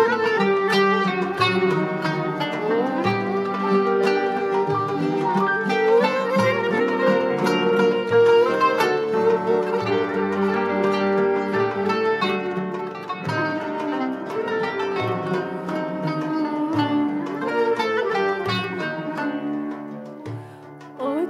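Turkish art-music ensemble playing the instrumental introduction to a şarkı in makam Hicaz-Uzzal. The plucked kanun melody is to the fore over held notes and a regular low beat.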